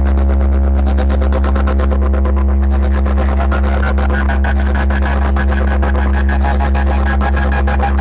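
A large DJ sound system of bass cabinets and horn speakers playing a bass test track: a continuous deep bass drone chopped by rapid, even pulses, several a second. A higher tone joins about halfway through.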